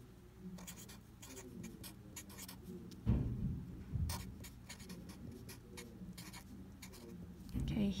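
Pen writing on paper: a run of short scratchy strokes as a sentence is written out, with a soft thump about three seconds in and another a second later.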